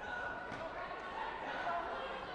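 Echoing sports-hall ambience of indistinct voices, with a couple of light thumps about half a second and a second in.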